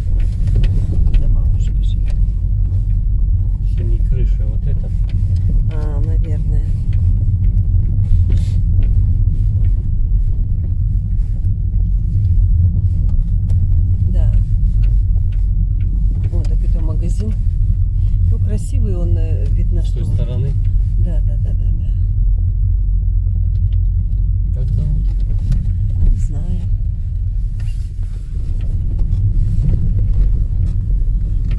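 Car driving slowly over a rough dirt road, heard from inside the cabin: a steady low rumble of engine and tyres.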